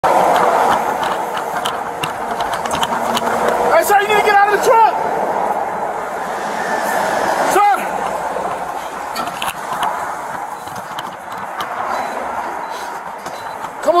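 A man shouting at a burning truck cab, calling out once around four seconds in and again briefly near eight seconds, over a steady rushing noise with scattered knocks and clicks, picked up by a body-worn camera's microphone.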